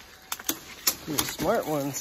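A few short sharp cracks of brush and twigs underfoot during the first second, then a man's voice starts, breathy and wavering in pitch, as he talks while climbing.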